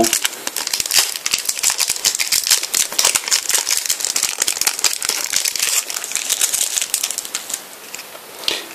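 Crinkling of a foil trading-card sachet as it is handled and the cards are pulled out of it, a dense crackle that dies down near the end.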